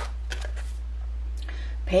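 Tarot cards being handled: a sharp card snap right at the start as a card comes off the deck, then a few softer flicks and a light rustle of card stock, over a steady low hum.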